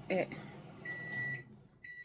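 Kitchen cooking timer beeping, signalling that the food is done: two long, high-pitched beeps of about half a second each, starting a little under a second in and repeating about once a second.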